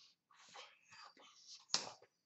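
A person's breathy, whisper-like mouth and breath sounds, unvoiced and in short bursts, made while signing. Near the end comes one sharp, louder burst.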